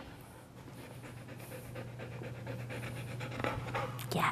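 An eight-month-old golden retriever panting rapidly and evenly, over a steady low hum.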